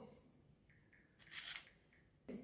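Near silence, with one brief faint rustle of hands handling food about a second and a half in.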